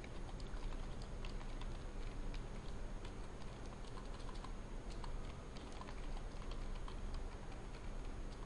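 Computer keyboard being typed on: a run of quick, irregular key clicks, over a steady low hum.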